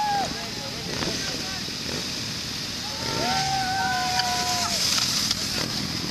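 A column of motorcycles riding past, engines and tyre noise running steadily. Over it come two long high held tones, one just at the start and a longer one from about three seconds in that sags slightly in pitch before it stops.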